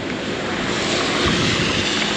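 Heavy monsoon rain and the hiss of traffic tyres on a soaked road, a steady rushing that swells about a second and a half in as a vehicle goes by.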